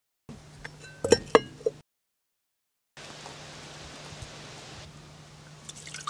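A few sharp knocks about a second in, then a steady faint background hiss with a low hum. Near the end, water begins splashing and dripping into a cast-iron pot.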